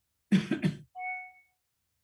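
A man coughing twice in quick succession, followed by a brief, fainter tone.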